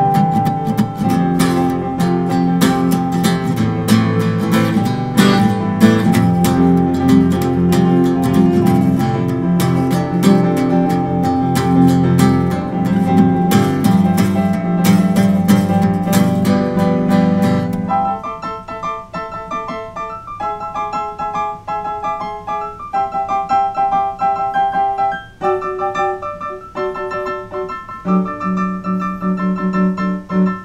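Instrumental duet of a Roland digital piano and a strummed acoustic guitar. About eighteen seconds in, the guitar strumming stops and the piano carries on alone with sparser chords and single notes.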